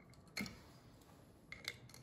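A cinnamon stick clicking against the glass neck of a whiskey bottle as it is pushed in: one faint click, then a few more near the end.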